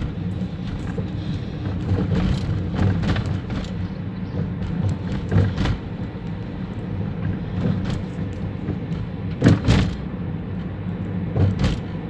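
A car's engine and road noise heard from inside the cabin while it drives along a street, with a few knocks and thumps along the way. The loudest comes about nine and a half seconds in.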